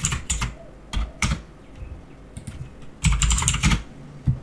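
Typing on a computer keyboard: a few keystrokes at the start, two more about a second in, then a quick run of keystrokes near the end.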